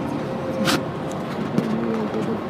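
Steady road and engine noise inside a moving car's cabin, with one brief sharp hiss-like burst about two-thirds of a second in.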